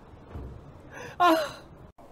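A young man lets out a short, nervous sigh, a breathy 'ah', a little over a second in, just after a quick breath in.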